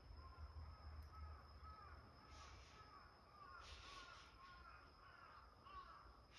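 Faint bird calls: a quick run of short, arching notes repeated several times a second, with a few soft rustles.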